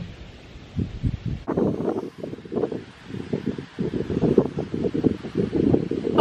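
Irregular rustling and crinkling of hands digging through a plastic bag of dirt and bait worms, thickening about a second and a half in.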